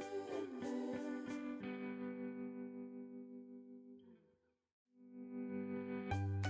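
Background instrumental music with plucked, ringing notes that die away to a brief silence a little past halfway, then the music starts up again.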